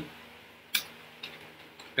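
Computer keyboard keystrokes: one sharp key click about a third of the way in, then a few fainter taps.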